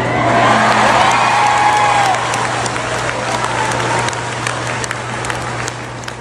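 Audience applauding, with a few voices cheering in the first couple of seconds; the applause slowly dies down.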